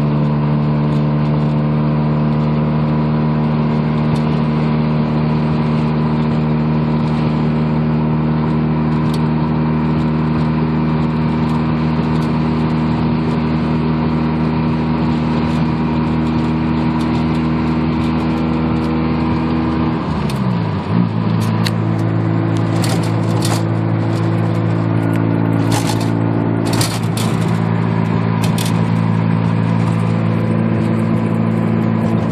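The naturally aspirated two-rotor 13B rotary engine of a 1987 Mazda RX-7 with headers and straight pipes, heard from inside the cabin while cruising at steady speed. Its note holds steady, then about two-thirds of the way through the pitch dips briefly and settles to a different steady note. A few sharp clicks of phone handling come near the end.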